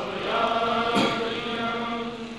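Unaccompanied male chanting of a manqabat, a Sufi devotional poem in praise of a saint, drawn out in long held notes. A short click about a second in.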